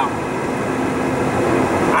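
Steady road noise inside a car cruising at highway speed: a rush of tyre and wind noise with a low engine hum beneath.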